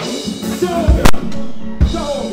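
Live reggae band playing with a lead singer's voice over it, punctuated by sharp drum hits about a second in and again near the end.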